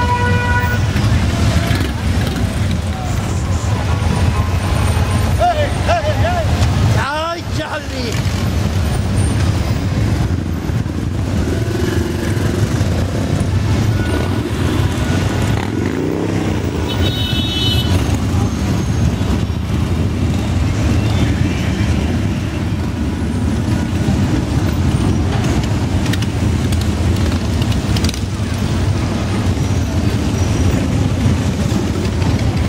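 Many motorcycles, mostly Harley-Davidson V-twins, running at low parade speed close together, a steady deep rumble. A steady pitched tone stops within the first second, and crowd voices carry over the engines.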